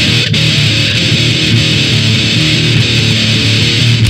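Grindcore band playing a loud distorted electric guitar riff over bass, kicking in abruptly right at the start.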